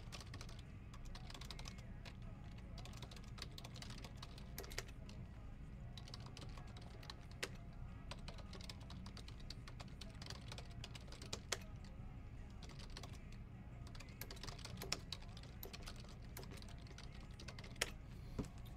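Scattered clicks of typing on a computer keyboard, a few keystrokes at a time, over a steady low hum.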